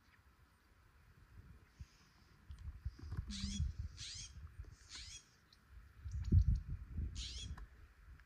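A songbird singing short, quick phrases of high, downward-slurred notes: three in close succession from about three seconds in and one more near the end. A low rumble runs underneath and swells a little after six seconds.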